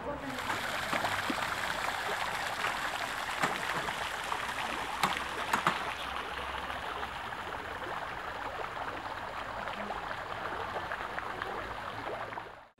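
Fountain jets splashing into a basin: a steady rush of falling water with a few small clicks.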